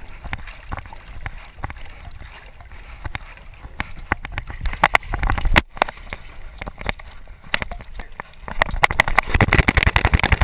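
Water splashing and gurgling around a swimming Labrador retriever, picked up close by a camera strapped to the dog. From about halfway it turns to a busier run of knocks and scuffles as the dog scrambles over the rocks, louder again near the end.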